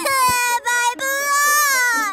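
A high, child-like cartoon voice making a long wordless cry, broken twice in the first second and falling slightly in pitch at the end.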